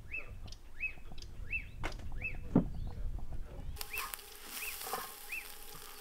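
A bird calling over and over, a short rising-and-falling note about every 0.7 seconds. There is one sharp knock about two and a half seconds in. From about four seconds in, a steady hiss joins the calls.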